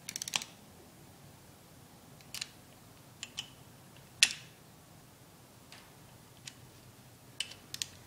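A hand ratchet clicking in a quick run as a differential girdle load bolt is run down, then scattered single sharp metal clicks from the wrench and socket on the bolts as they are brought to a light torque. The loudest click comes about four seconds in.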